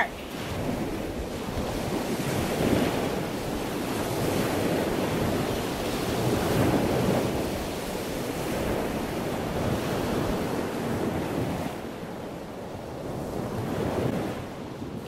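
Steady rushing water noise like surf, swelling and easing slowly over a few seconds and dipping briefly near the end.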